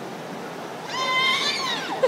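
A young child's high-pitched squeal, about a second long, starting about a second in and rising then falling in pitch.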